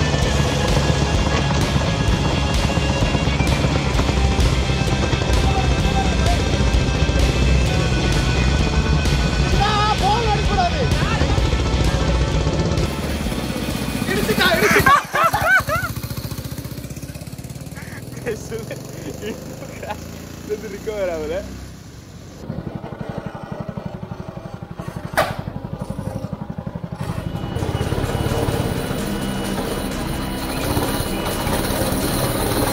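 Small go-kart engine running steadily, dropping away after about half the time and coming back near the end, with a single sharp knock in between.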